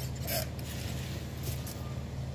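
A sprayer puts out liquid fertilizer onto oil palm seedlings in two short hissing bursts, one near the start and one about halfway through, over a steady low hum.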